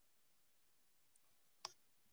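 Near silence: room tone, broken by one short faint click about one and a half seconds in.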